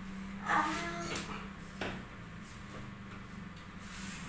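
A short creaking scrape about half a second in, then a single sharp knock a little before two seconds, as something at the ceiling is worked loose by hand.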